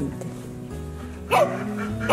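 Background music with steady held tones, and about a second and a half in a single short animal call that drops sharply in pitch.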